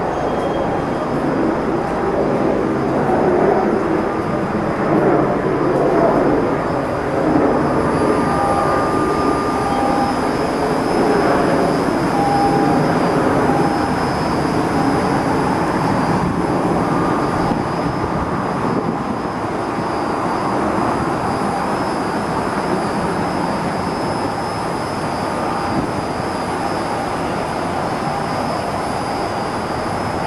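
Steady city noise heard from a high rooftop: a continuous drone of traffic from the streets below, rising and falling slightly in loudness.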